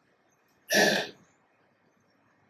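A man clearing his throat once, a short sharp burst just under a second in.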